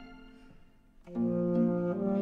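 Chamber string ensemble music: a phrase dies away to a brief hush, then about a second in the strings enter together on a sustained chord, the cello clear at the bottom.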